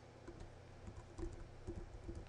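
Computer keyboard typing: a run of faint, irregularly spaced keystrokes.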